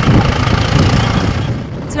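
Farm tractor engine running as it pulls a seed drill over tilled ground: a loud, low rumble.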